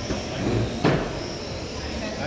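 A single sharp knock about a second in, over a steady background hum with a faint high whine.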